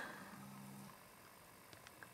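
Near silence: room tone, with a faint brief low hum about half a second in and a few faint clicks near the end.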